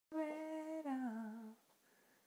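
A woman humming with her mouth closed: a held note, then a glide down to a lower note, about a second and a half in all, then it stops.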